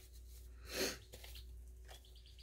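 A single short, breathy exhale or sniff from a person about a second in, over a faint steady low hum.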